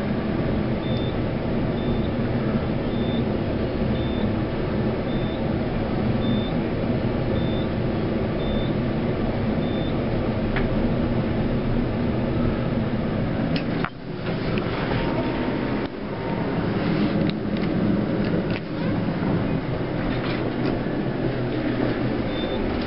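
Schindler traction elevator car running upward: a steady hum and rumble of the moving cab, with a short high beep repeating about once a second for the first ten seconds. About 14 s in there is a sharp click and a brief drop in level, and the sound turns more uneven.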